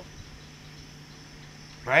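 Night ambience: a faint, steady chorus of insects with a steady low hum beneath it, then a man's voice saying "right?" near the end.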